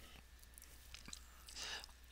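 Near silence between a speaker's words, with a steady low hum and a few faint mouth clicks, then a soft breath near the end.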